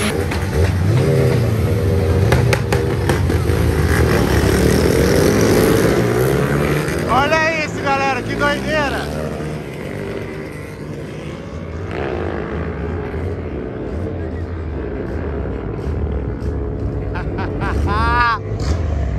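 Motorcycle engines revving hard on a drag strip, loudest in the first half and fading after about nine seconds.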